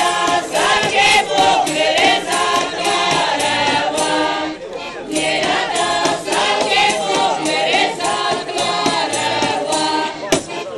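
A group of people singing a folk song together, with a short break in the singing about halfway through.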